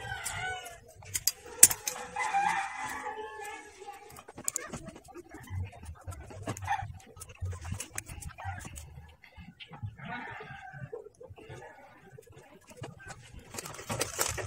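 Sharp clicks of side cutters snipping plastic model-kit parts from their runners, with a drawn-out animal call in the background during the first few seconds.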